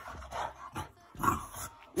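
A pet's short vocal sounds, twice, while a cat is being stroked.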